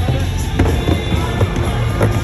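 Skateboard landing an air on a wooden vert ramp: a sharp clack of the wheels hitting the ramp a little over half a second in, a second, lighter knock later, and the rumble of the wheels rolling down the ramp. Music plays in the background.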